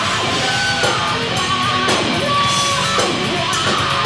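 A live heavy metal band playing loudly: distorted electric guitar over a drum kit with frequent cymbal hits, heard through the venue's PA.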